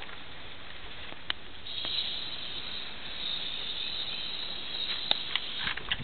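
Aerosol spray can hissing in one steady spray lasting about four seconds, starting a little under two seconds in.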